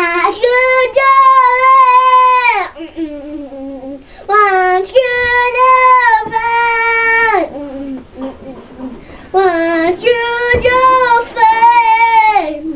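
A young boy singing unaccompanied: three long held notes of a few seconds each, each dropping in pitch at its end.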